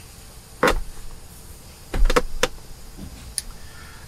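Four short knocks or clicks over a quiet background: one about half a second in, then three close together around two seconds in, the first of those with a dull low thump.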